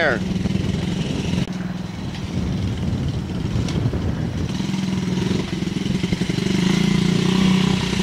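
Yamaha TTR-90 mini dirt bike engine, a small four-stroke single, running at low to moderate throttle as the bikes ride by. The steady drone rises and dips a little and grows louder near the end as a bike comes close.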